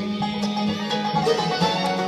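Live bluegrass band playing an instrumental passage between sung lines, on banjo, fiddle, acoustic guitar, mandolin and upright bass. A low note is held through the first second.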